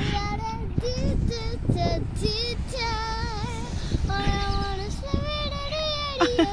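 A young girl singing without accompaniment, holding long notes with a wavering pitch.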